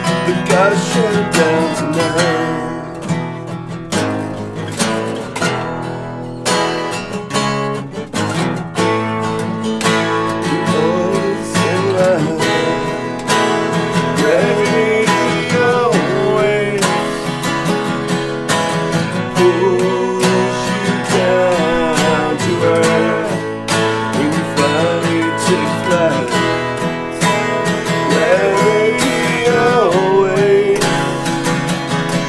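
Live acoustic band music: several acoustic guitars strumming together under a melodic lead line that bends and slides in pitch.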